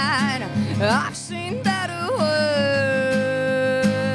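A woman singing live over strummed acoustic guitar: short rising and falling phrases, then a long held note from about halfway through.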